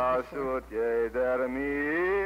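A solo voice singing a slow Yiddish song in long held notes, from a 1948 archival recording of a Holocaust survivor played back over loudspeakers, with a low hum underneath.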